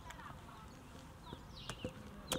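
Faint outdoor background during a pause in speech, with a few small clicks and short, high chirps in the second half.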